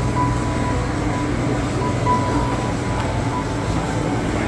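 Fish market hall ambience: a steady low machinery hum, from refrigeration and ventilation, under a general bustle, with faint background music that has short high notes.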